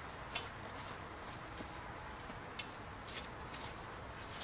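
A few short, sharp clicks or taps, the loudest about a third of a second in and others scattered later, over faint outdoor background noise.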